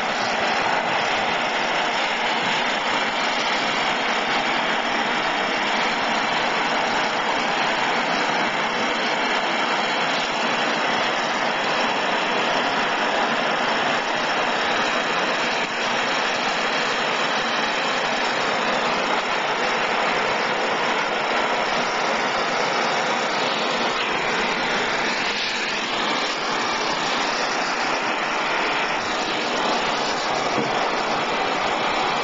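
Handheld gas torch flame burning with a steady hiss, heating fluxed copper elbow joints for sweat-soldering.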